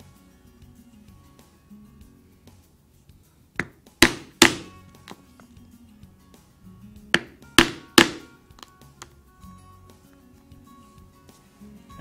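A mallet striking a one-eighth-inch drive punch through thick vegetable-tanned leather on a cutting board, punching rivet holes: three sharp blows about four seconds in, then three more about three seconds later. Quiet background music throughout.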